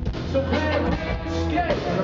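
Live rock band playing through a PA: electric guitars over a drum kit, with a melody line bending up and down in pitch.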